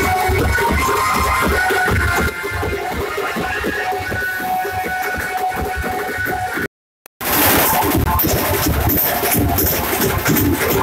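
Indian brass band playing: trumpets, euphonium and clarinet holding notes over steady snare and bass drum beats. The sound drops out for about half a second around seven seconds in, then the band carries on.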